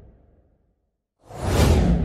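A whoosh transition sound effect. A broad rushing sound fades out, there is a short gap of silence, and a new whoosh swells suddenly about a second and a quarter in and then starts to die away.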